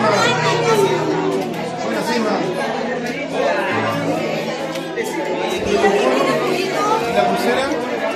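Many people talking at once in a crowded hall: a steady hubbub of overlapping conversation, no single voice standing out.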